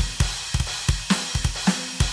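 Roland TD-17 electronic drum module's kit sounds played from mesh-head pads: a fast groove of deep kick-drum thumps with cymbal and snare hits, several strokes a second.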